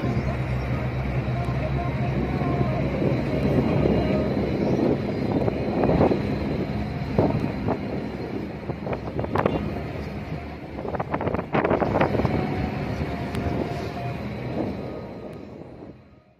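Heavy truck driving on a mountain road, heard from the cab: a steady engine and road rumble with wind on the microphone. A few sharp knocks and rattles come in about two-thirds of the way through.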